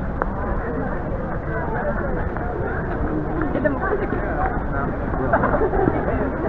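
Crowd of people talking at once, a steady babble of many overlapping voices with no single voice clear.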